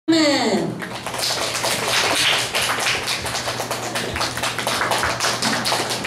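Small audience applauding, a dense, irregular patter of hand claps, opened by a brief downward-gliding tone in the first moment.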